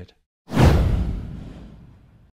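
Whoosh sound effect for an animated logo: it starts sharply about half a second in, deep at the bottom with a hiss on top, and fades away slowly.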